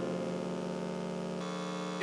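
The last held notes of the worship music dying away, over a steady electrical hum from the sound system; about a second and a half in, most of the notes drop out and mainly the hum remains.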